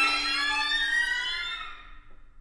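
String quartet playing several slow glissandi at once: high bowed tones sliding up and down past one another over a steady held lower note, fading away near the end.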